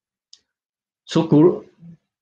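Speech only: about a second of dead silence broken by one faint, very short click, then a voice says "So".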